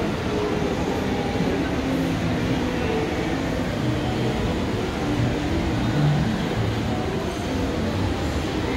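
Steady low rumble of indoor shopping-mall background noise, with faint indistinct sounds in the mix.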